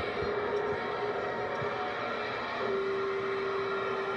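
A large crowd's steady roar of cheering at the New Year's ball drop, with a sustained low note held underneath that grows stronger past the middle.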